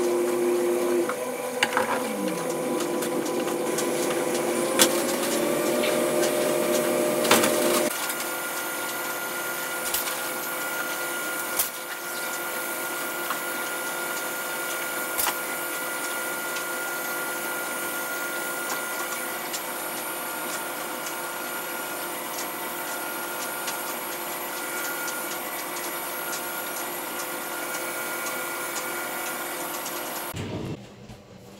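Hand dishwashing at a kitchen sink: a few sharp clinks and knocks of dishes and plastic containers over a steady machine-like hum. The hum's pitch rises about five seconds in and settles at about eight seconds.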